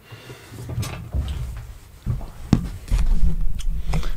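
Handling and movement noises in a small room: rustling, a low rumble and a few sharp knocks and clicks, as a person sits down in a desk chair close to the camera.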